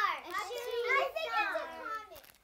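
Young children's voices calling out answers together, several at once.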